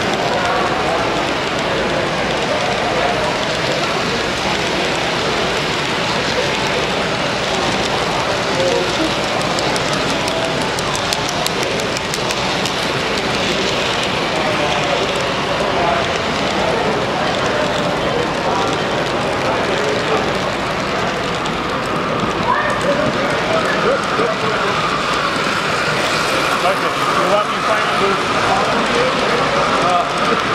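Model train cars rolling steadily past on the layout track, a continuous rumble and clatter of wheels, over the chatter of a crowded exhibition hall. A steady high tone joins in about two-thirds of the way through.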